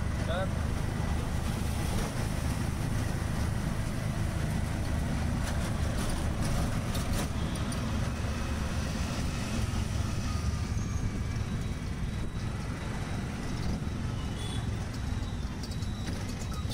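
Auto-rickshaw engine running as it drives through city traffic, heard from inside the open cabin as a steady low rumble with the noise of the surrounding traffic.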